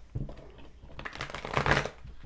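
A deck of oracle cards being shuffled by hand: a rustling run of cards sliding over one another starts about a second in and is loudest near the end.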